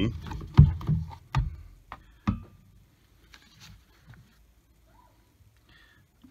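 A plastic engine coil cover being pulled off its push-in mounting studs: a few sharp snaps and knocks in the first couple of seconds, then faint handling of the loose cover.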